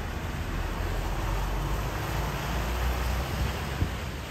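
Steady street traffic noise, a rumble of passing cars and motorbikes with wind on the microphone. There is a short knock near the end.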